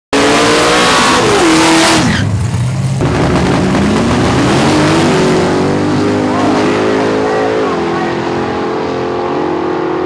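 Drag racing cars, a Mustang among them, at full throttle on the strip. The engines rev high and fall away about two seconds in, then climb steadily as the cars run down the track, with a gear change about three-quarters of the way through.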